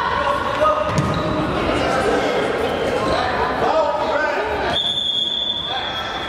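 Indoor futsal play in a reverberant sports hall: the ball thumping off feet and the court, sneakers squeaking on the floor, and children's voices calling. Near the end a long, steady, high whistle sounds.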